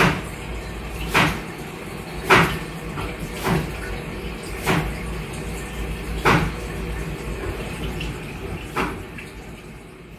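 Water in a bathroom sink basin and drain, with a steady low background and sharp drips or splashes about every one to two seconds that thin out near the end.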